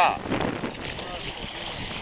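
Steady wind noise on the microphone over the wash of choppy sea water alongside a boat, with a man's voice breaking off at the very start.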